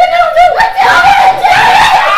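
Girls screaming loudly, one high-pitched scream held at a steady pitch through the second half, mixed with giggling.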